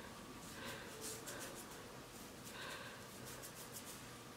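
Faint scratching and rustling of fingers working oil into twisted hair and the scalp, with a few soft crackles near the end.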